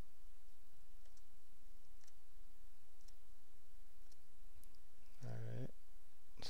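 Faint computer keyboard keystrokes, single clicks about once a second, as Enter is pressed to accept the installer's default answers. A low steady hum runs underneath.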